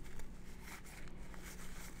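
Faint rustling and rubbing of a paper towel dampened with isopropyl alcohol, wiping old thermal paste off the metal fins and base of a CPU heatsink, over a low steady hum.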